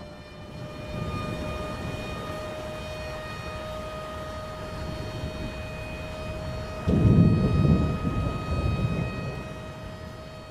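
A low rumbling sound effect over a faint steady hum. About seven seconds in comes a sudden, loud, deep boom that rolls away over about two seconds.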